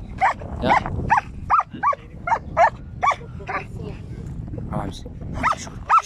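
German Shepherd barking in a quick run of short, high barks about two a second, then a brief lull and two more barks near the end. The barking is the dog worked up at a cow it is being held back from.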